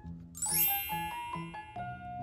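A bright, twinkling chime rings out about half a second in and fades slowly, over light background music with a steady, bouncy note pattern.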